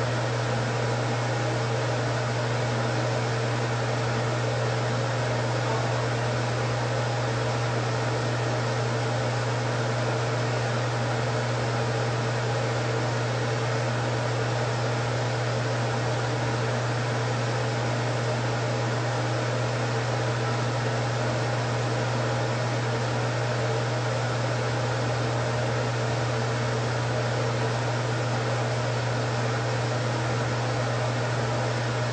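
A running fan: a steady low motor hum under an even hiss of moving air, unchanging throughout.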